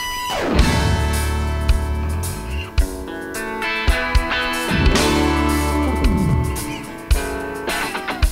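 A live rock band (electric guitars, keyboards, bass and drums) playing a passage with no words picked up, electric guitar to the fore, with drum hits. Several notes slide down in pitch: near the start, around five and six seconds in, and near the end.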